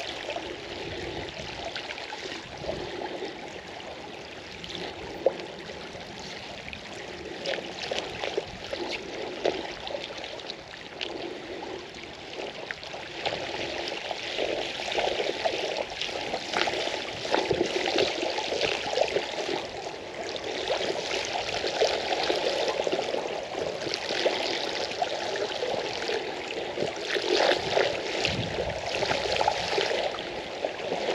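Creek water rushing and splashing with a crackling hiss, growing louder about halfway through.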